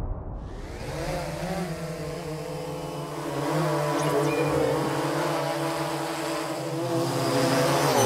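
Quadcopter drone's propellers whirring as it hovers: a steady hum of several tones that wavers slightly in pitch, grows a little louder partway through and stops abruptly at the end.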